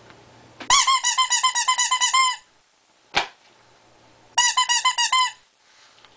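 Rubber squeeze toy squeezed over and over: a run of rapid squeaks, about seven or eight a second, for about a second and a half, then a single sharp click, then a shorter run of squeaks near the end.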